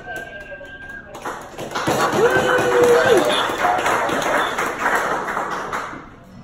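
A police radio speaker gives a steady beep for about a second. It then carries a loud rush of open-channel noise for the rest of the time, with faint tones in it.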